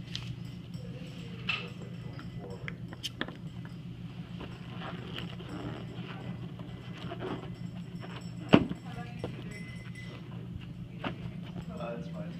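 Hands handling a hydrogen-filled rubber balloon, with scattered small handling noises and one sharp knock about eight and a half seconds in, over a steady low hum.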